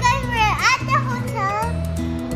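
A young girl's high voice making sounds without clear words for the first second and a half or so, over upbeat background music with a steady beat.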